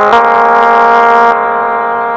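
Casio SA-11 electronic keyboard playing a melody note by note: a new note starts just after the opening and is held, growing duller about two-thirds of the way through.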